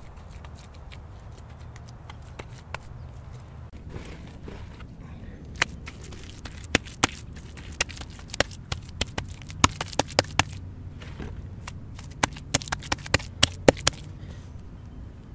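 Sun-dried adobe bricks being shifted and set by hand on dirt: scraping, with many sharp knocks and clicks that come thick and fast in the second half.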